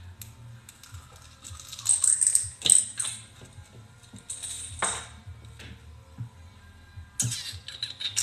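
Clicking and rattling of small hard objects being rummaged through, like loose pearls in a dish. It comes in spells, loudest about two to three seconds in, again near five seconds and near the end.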